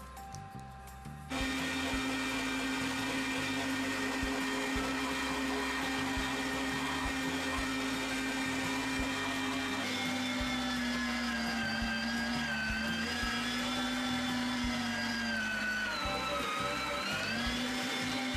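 Electric meat grinder motor switching on about a second in and running with a steady hum. In the second half its pitch sags and wavers under load as bunches of parsley and cilantro are forced through.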